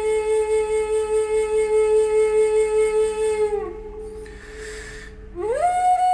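Flute music: one long held note with a gentle pulse, bending down as it ends about three and a half seconds in. After a short quieter spell, the flute slides up into a higher held note near the end.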